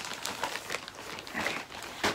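A bag crinkling and rustling in irregular bursts as a skein of yarn is pushed back into it by hand.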